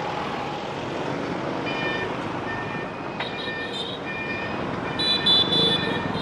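Dense street traffic of motorbikes and trucks passing close by, a steady engine and tyre noise. Several short horn beeps are heard from about two seconds in.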